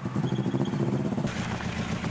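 Rally car engine idling with a steady low hum; more noise joins about a second and a half in.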